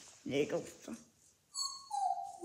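A short vocal sound, then a high-pitched whine about three-quarters of the way through.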